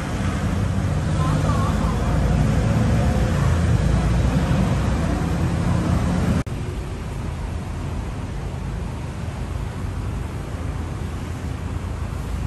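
Street traffic outside: a vehicle's engine rumbles low and close for about the first six seconds, then stops abruptly, leaving a quieter, steady street hum.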